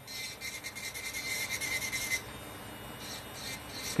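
Electric nail drill with an acrylic cuticle bit grinding acrylic at the cuticle line of a nail, taking it down flush. The drill gives a steady high whine over a rasping hiss, and the whine drops out a little past halfway while the grinding goes on.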